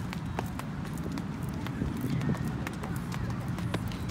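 Double-dutch jump ropes slapping a rubber running track and sneakers landing as a girl jumps, a light, irregular patter of slaps over a low outdoor rumble.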